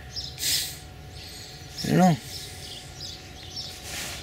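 A man's voice says a short phrase about two seconds in, over a steady low outdoor background. A brief high hiss comes about half a second in.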